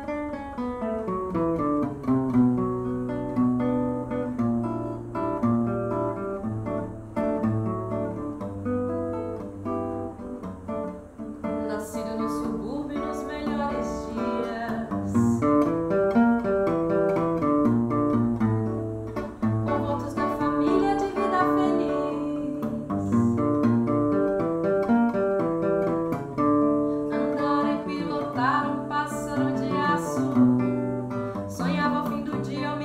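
Seven-string nylon-string guitar (violão de sete cordas) playing a samba introduction, with moving bass lines on the low strings under chords and melody. A woman's singing voice comes in near the end.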